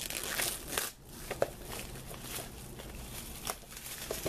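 Plastic crinkling and crackling as a DVD case is handled and opened, busiest in the first second, with a single sharp click about a second and a half in and a few smaller clicks later.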